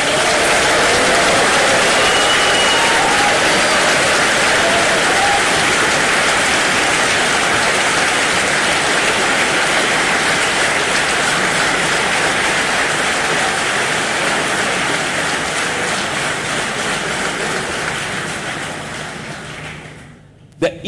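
Large audience in a hall applauding loudly and steadily, the clapping dying away over the last few seconds.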